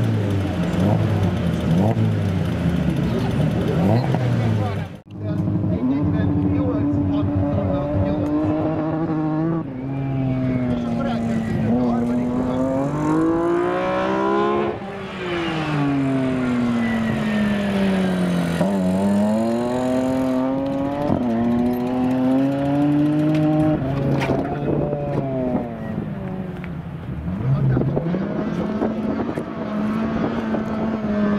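BMW E36 M3 drift car's engine revving hard, its pitch climbing and dropping again and again through the slides, with one long fall in revs midway, over the noise of its tyres. A sudden brief dropout about five seconds in.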